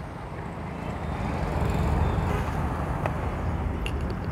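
Outdoor background rumble with no speech, swelling to its loudest about two seconds in and then easing off.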